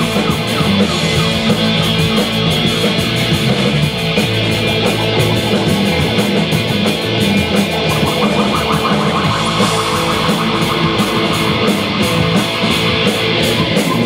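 Live rock band playing an instrumental passage with no vocals: electric guitars and a drum kit, with cymbals keeping a steady beat. A wavering high melody line rises out of the mix about two-thirds of the way through.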